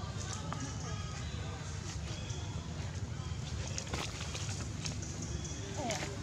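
Indistinct voices under a steady low rumble, with scattered faint clicks and a few short high squeaks near the end.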